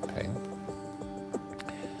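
Quiet background music with sustained, held chords under a pause in speech.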